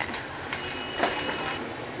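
Street noise with scooter and motorbike engines running as they ride along the street, plus a few faint knocks.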